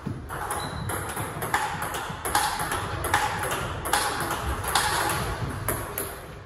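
Table tennis rally: the plastic ball clicking off rubber bats and bouncing on the table in a quick, steady run of hits, about two to three a second.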